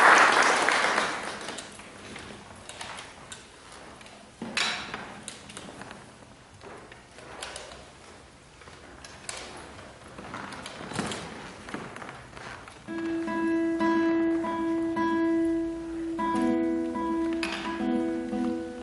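Brief applause dies away, followed by scattered knocks and shuffles as the guitarist settles on a wooden chair and places his footstool. About thirteen seconds in, nylon-string classical guitar strings are plucked and left ringing, a few held notes at a time, as the guitar is tuned.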